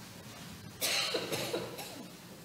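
A person coughing three times in quick succession, starting just under a second in.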